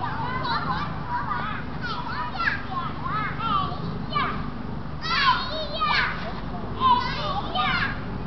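Children's voices shouting and calling in high, swooping cries over a steady low background noise, with the loudest cries a little after five, six and seven seconds in.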